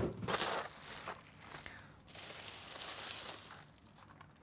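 Thin plastic shopping bag crinkling and rustling as it is handled and opened, after a single sharp tap at the start.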